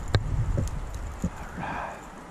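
Handling noise from a plastic fishing lure and bare tree branches: one sharp click just after the start, a few lighter knocks, and a brief rustle near the end.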